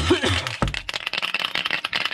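Aerosol can of spray adhesive being shaken by hand, a fast continuous rattling. A person coughs right at the start.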